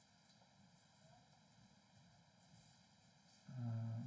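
Near silence with faint, soft scratching of a Caran d'Ache crayon drawn in short horizontal strokes across paper; a man's voice comes in near the end.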